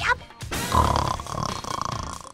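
A person's loud, rough snore, voiced by a voice actor, starting about half a second in and lasting to the end, over background music.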